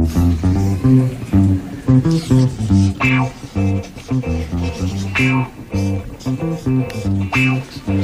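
Game-show think music: an upbeat repeating bass-guitar riff with plucked electric guitar, the cue that plays while the answers are being written.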